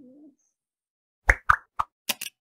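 Three quick, sharp pop sound effects in the second half, the opening of an animated channel outro, after a moment of silence.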